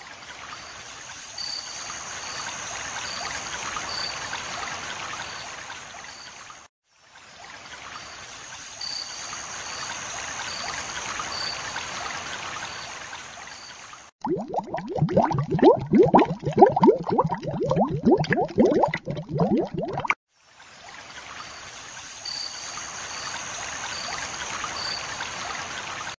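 Steady running water of a stream or trickle, the same short recording breaking off for a moment and starting again in a loop. About fourteen seconds in, it gives way for some six seconds to a louder, lower bubbling sound made of many quick rising pitches, then the running water returns.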